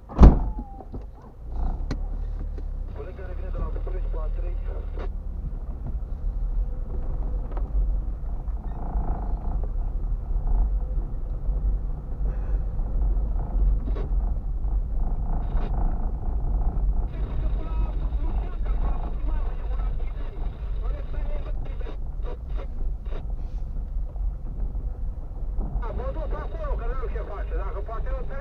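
Low, steady rumble inside a car cabin as the car drives slowly over a rough, broken road. A loud knock comes just after the start, and scattered clicks and knocks from the bumpy surface are heard later.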